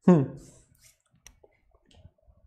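A man's short vocal sound with falling pitch, then a few faint clicks and light knocks as a metal water bottle is picked up and opened.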